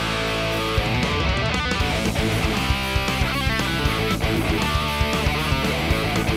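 Electric guitar, a gold-top Les Paul-style, playing a fast rock riff at about 117 beats a minute: palm-muted chugs on the open low string broken up by double-stop chords and quick hammer-on and pull-off runs.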